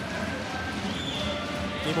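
Indoor volleyball arena crowd noise with a short, steady, high whistle blast about a second in: the referee's whistle signalling the serve.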